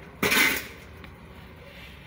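A single short clatter about a quarter second in, lasting about half a second, over faint steady background noise.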